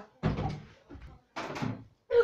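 Two knocks about a second apart: a plastic water bottle thrown in a flip hits the floor and tips over, a missed landing.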